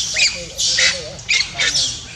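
Baby macaque screaming in distress as a larger macaque comes at it: a rapid series of high-pitched shrieks, about four or five.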